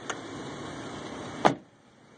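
A car door shut with a single sharp thump about one and a half seconds in, preceded by a light click; the steady background noise drops away after the slam.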